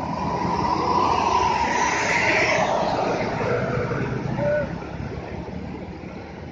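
A Mercedes-Benz OH 1626 tour bus driving past close by, its rear-mounted diesel engine and tyres loudest about one to three seconds in, then fading as it moves away.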